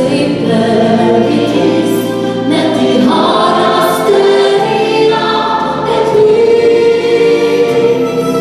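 Gospel choir singing in parts, holding long chords that change every second or so, with a live band accompanying over a steady bass line.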